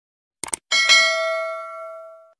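Sound effects of a subscribe-button animation: two quick mouse clicks, then a notification-bell ding that rings out with several clear tones and fades away.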